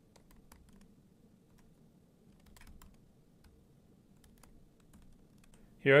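Faint, irregular keystrokes on a computer keyboard as a line of code is typed.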